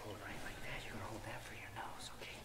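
Faint, indistinct voices speaking quietly, with a low steady hum underneath.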